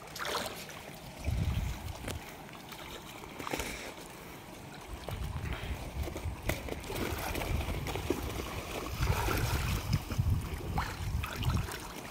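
Shallow stream water sloshing and trickling as people wade through it and handle a fishing net, with a few small splashes and low rumbles that come and go.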